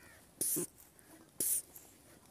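High-pressure hand pump charging a PCP air rifle. There are two pump strokes about a second apart, each a short hiss of air with a faint knock as it starts.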